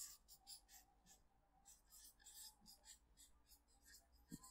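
Felt-tip marker writing on flip-chart paper: a quick, irregular series of short, faint scratchy strokes as letters are written.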